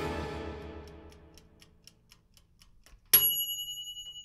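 Background music fading out, then a light ticking sound effect at about four ticks a second. About three seconds in, a single bright bell ding rings on.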